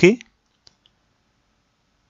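A single faint computer-mouse click about half a second in, with the rest near silent.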